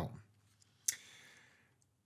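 A single sharp click about a second in, followed by a short soft breath.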